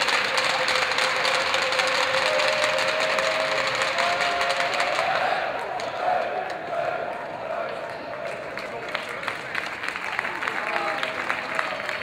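Ice hockey arena crowd cheering and applauding, with voices holding a long chanted note over the noise. The cheering eases about halfway through, leaving scattered clapping.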